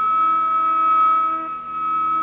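Carnatic bamboo flute holding one long, steady high note over a fainter sustained accompaniment in the raga Reethigowla.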